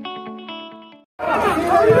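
A short guitar intro jingle ends on a held chord that fades out. After a brief gap, a loud crowd of protesters is heard, many voices shouting over one another.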